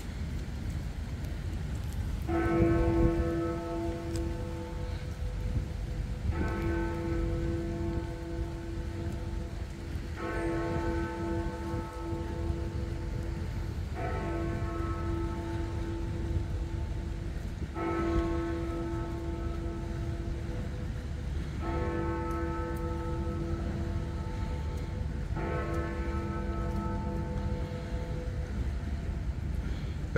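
Big Ben, the hour bell of the Westminster clock tower, striking seven o'clock: seven slow, ringing strokes about four seconds apart. The first comes about two seconds in, and each rings on until the next. A steady low rumble of wind and city noise runs underneath.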